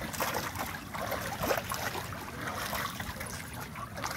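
Shallow water sloshing, splashing and trickling around a man's legs and hands as he holds a tarpon in the water and lets it go, with a few short splashes.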